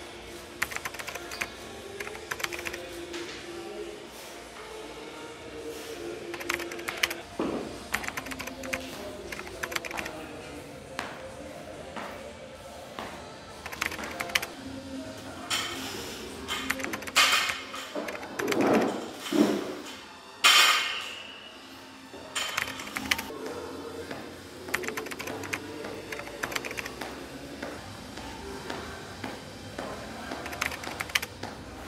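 Gym workout sounds over soft background music: scattered clicks and knocks of weight equipment and shoes on rubber flooring. About two-thirds of the way in, a cluster of louder sounds ends in one sharp, loud hit.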